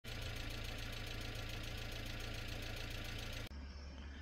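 An engine running steadily with a fast, even pulse over a low hum, cutting off abruptly near the end.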